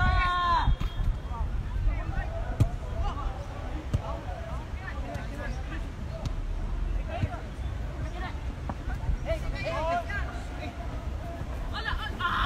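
Scattered shouts of football players and coaches calling across the pitch, with a couple of sharp thuds of the ball being kicked, about two and a half and four seconds in, over a steady low rumble.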